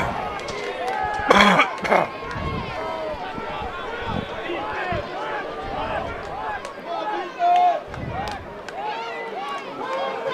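Football game crowd: many overlapping voices shouting and chattering at once, with one louder shout about a second and a half in.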